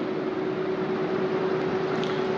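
Steady hiss with a single steady tone held through it, unchanging throughout.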